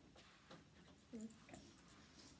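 Near silence: classroom room tone with a few faint small clicks and a brief faint pitched sound about a second in.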